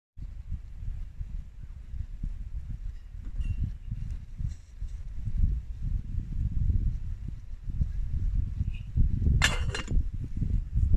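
Wind buffeting the microphone, an unsteady low rumble throughout, with a few faint metallic clinks. Just before the end comes a brief, louder metal clatter and scrape as the lid goes onto the mess kit cup.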